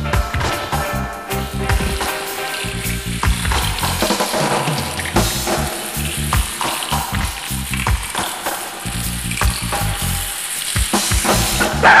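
Reggae song playing: bass line and steady drum beat with a hissing wash of high-end noise over it, no clear singing.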